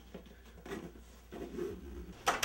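Faint scratchy rustling of a soft fabric suitcase being pressed down and closed, in a few short irregular bursts, the longest near the end.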